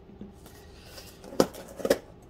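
Small cardboard box handled and opened with a folding knife: faint scraping, then two sharp clicks about half a second apart near the end.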